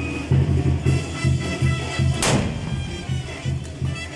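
Band music with a steady drum beat and held wind-instrument notes, and a single sharp musket blast, a gunpowder blank shot, a little over two seconds in.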